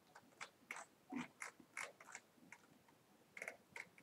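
Faint, irregular clicking of a computer mouse, its buttons and scroll wheel, about a dozen short clicks in four seconds, against near silence.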